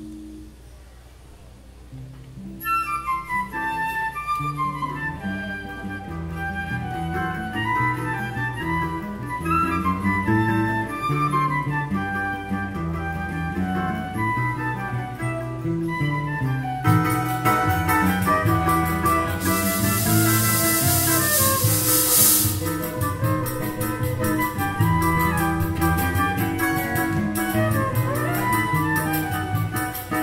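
Choro ensemble starts a tune about two and a half seconds in: a flute leads with quick rising and falling runs over guitar, cavaquinho and pandeiro, with trombone and saxophone. The band grows fuller about seventeen seconds in, with a brief high hiss a few seconds later.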